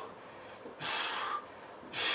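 A man breathing hard while exercising: one forceful exhale about a second in, and another starting near the end.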